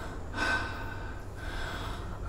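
A man breathing hard after a run: one strong breath about half a second in, then a weaker one near the end. A faint steady hum runs underneath.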